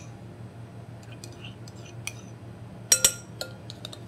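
Metal spoon scraping yogurt out of a ceramic cup and tapping it against a glass mixing bowl: light scattered clicks, then two sharp clinks about three seconds in.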